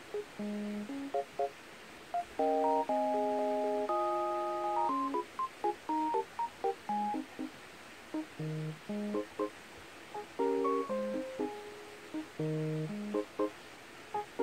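Background music: a light tune of short, separate instrumental notes and chords.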